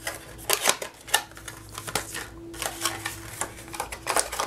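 Cardstock gift box being folded and pressed into shape by hand: irregular light paper crackles and taps.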